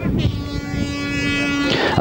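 A car horn sounding one steady held note for over a second, over low wind and ground rumble.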